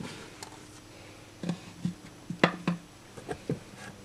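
Hands and folded T-shirts knocking against the sides of a wooden dresser drawer as shirts are stacked upright in it: a cluster of short, soft knocks through the middle, the loudest about two and a half seconds in.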